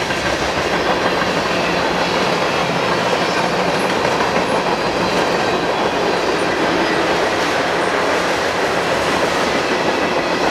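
Freight cars of a CN freight train rolling past at close range: a steady, loud noise of steel wheels running on the rails, with a few faint high squeaks in the middle.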